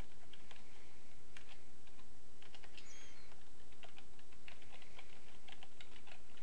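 Computer keyboard keys being typed: irregular strings of keystroke clicks as a command is entered in the Windows command prompt.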